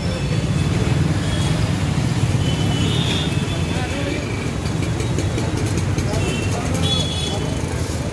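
Busy street noise: motorcycles and scooters running close by with a steady low engine rumble, under the chatter of a crowd, and a few short high tones about three and seven seconds in.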